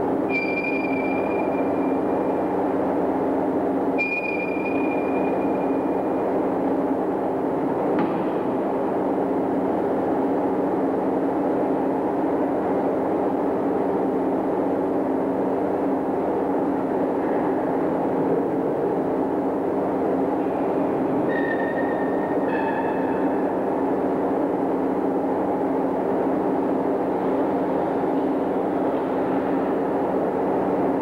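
A steady low hum with a rushing noise. Brief high beeping tones come about half a second in, again about four seconds in, and a few more a little past twenty seconds, with a single click at about eight seconds.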